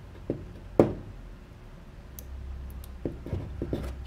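Crimping pliers squeezing a butt connector onto a wire: a sharp click about a second in, then a few lighter clicks near the end.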